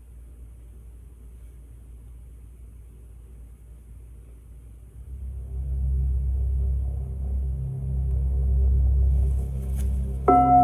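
A deep, low drone: faint at first, then swelling to a loud, steady level about five seconds in, with faint higher tones held over it.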